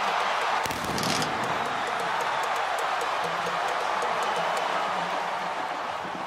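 Large football stadium crowd cheering steadily.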